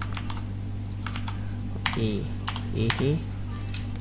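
Computer keyboard keys pressed as separate, unevenly spaced clicks, a handful of keystrokes entering shortcuts in editing software. A steady low hum runs underneath.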